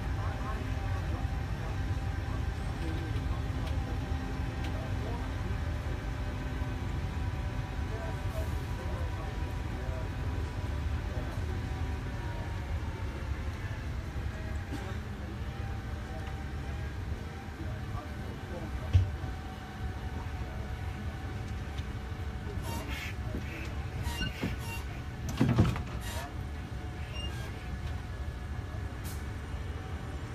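Land train, a road tractor towing passenger carriages, running steadily, heard from aboard a carriage: a low rumble with a steady engine hum. A sharp knock comes past the middle and a louder thump a few seconds later, among scattered clicks and rattles.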